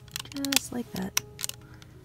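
Hard plastic crystal puzzle pieces clicking and tapping as the assembled duck is turned in the hands, several sharp clicks in a row. Two brief voice-like sounds come in near the start and about a second in.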